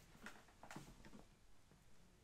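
Near silence: room tone with a few faint, short ticks or rustles in the first half.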